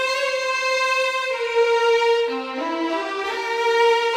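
Sampled string ensemble violins (8Dio Agitato Grandiose Legato) playing a slow, old-Hollywood-style melody legato: long held notes joined by short slides, with a phrase that drops and climbs back up in quick steps a little past the middle.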